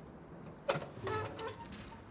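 Animated-film sound effect of the machine-like creature answering a call: a sudden clank about two-thirds of a second in, then a short pitched, mechanical sound that dies away near the end.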